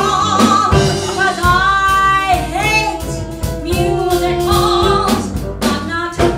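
A woman singing a show tune into a microphone, holding several long notes, backed by a small jazz band of upright bass, piano and drum kit.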